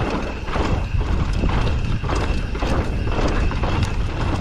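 Downhill mountain bike (Mondraker Summum) running fast down a dry dirt track: a steady low rumble of wind and tyres, with repeated clattering knocks as the bike rattles over bumps.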